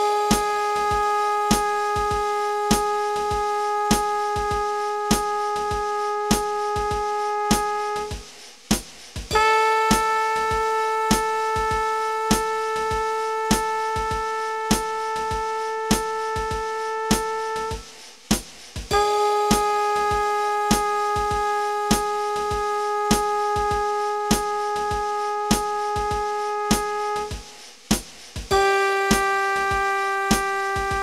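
Long-tone practice track: a steady sustained instrument note held for about eight seconds at a time, with short breaks, alternating between a lower note and a slightly higher one four times. An even metronome click runs underneath, about three clicks every two seconds.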